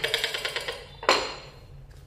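Xóc đĩa game discs rattling rapidly inside a porcelain bowl clapped over a plate as the two are shaken together. The rattle stops about a second in.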